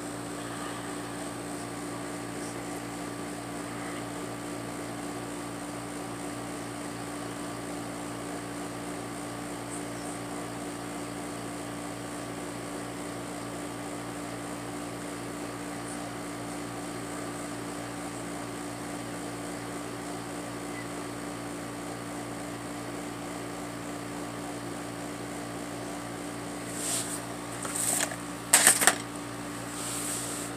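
A steady, unchanging mechanical hum with several fixed low tones under a light hiss, and a short louder click near the end.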